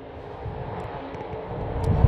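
A low, rumbling drone with a faint steady hum, growing louder toward the end.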